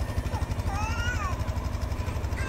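Honda dual-sport motorcycle engine idling, a steady low rumble with an even pulse.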